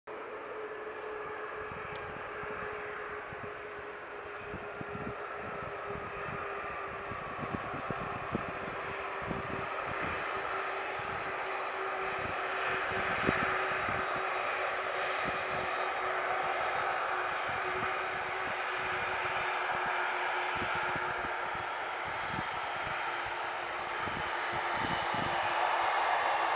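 Boeing 747-400F's four jet engines running as the freighter lands and rolls out: a steady jet roar with a low droning tone and fainter high whines, growing louder as it nears.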